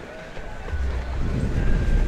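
Wind buffeting the camera's microphone: an uneven low rumble that grows stronger about a third of the way in.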